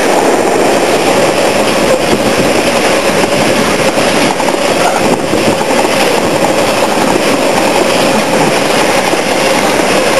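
Covered hopper wagons of a freight train rolling past close by, a loud, steady noise of steel wheels on the rails.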